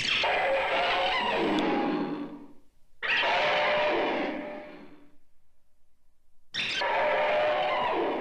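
A harsh, shrieking monster call sound effect, heard three times about three seconds apart. Each call lasts about two seconds and trails off in echo.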